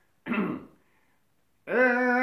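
A man clears his throat once, then about a second and a half in starts a long, steadily held sung note: the opening lament of a flamenco fandango.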